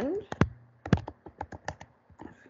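Typing on a computer keyboard: a quick, uneven run of about ten key clicks as a word is typed.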